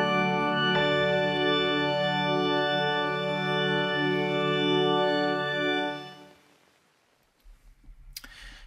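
A sustained chord played on the 'Rainforest Grand' patch of Steinberg's Materials: Wood & Water sample library, with fresh notes coming in just under a second in. The held sound fades away at about six seconds, leaving silence.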